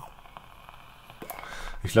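Quiet draw on an e-cigarette mod as it fires: a faint hiss and crackle from the atomizer, with a few small clicks a little after a second in.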